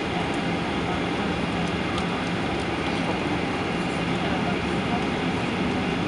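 Steady cabin noise of a Boeing 737-800 taxiing on its CFM56-7B turbofans, heard from inside the cabin: an even rushing hum with a steady low drone under it.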